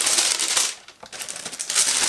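Tissue paper rustling and crinkling as it is pulled open and folded back from a packed box, in two spells: for the first half-second or so, then again near the end.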